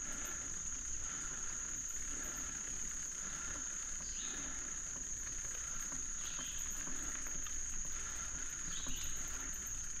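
Steady high-pitched insect chorus, with the low rumble of bicycle tyres rolling on a dirt trail beneath it.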